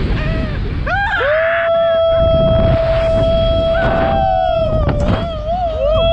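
A rider on a reverse-bungee slingshot ride lets out one long, high-pitched scream held on a steady note for about three and a half seconds, followed near the end by shorter yells. Wind rushing over the microphone from the ride's motion runs underneath.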